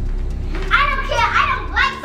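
A child's high-pitched voice, starting under a second in and running in short broken phrases, over a low steady hum.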